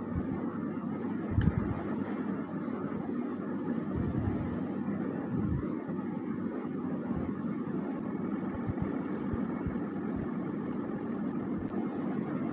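A steady background noise runs throughout, with a few soft low bumps, the clearest about a second and a half in and again past five seconds, from makeup items being handled close to the microphone.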